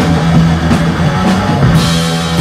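Punk band playing loud live, with electric guitars, bass and drum kit and several cymbal hits, without singing.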